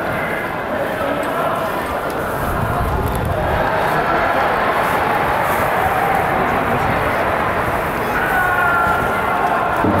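Football stadium crowd: many voices from the stands blending into a steady murmur, with a few longer held voices rising above it near the end.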